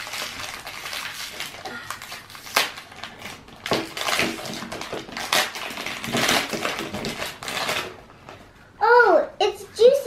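Shiny foil-lined toy packet crinkling and tearing as it is pulled open by hand: a dense crackle for about eight seconds. A child's voice comes in briefly near the end.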